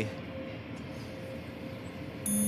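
Steady background rumble with a faint steady hum running through it.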